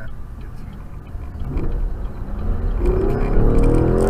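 Aston Martin Vantage's twin-turbo V8 accelerating hard, its exhaust note rising in pitch and growing louder from about halfway through, heard from a following car over low road rumble.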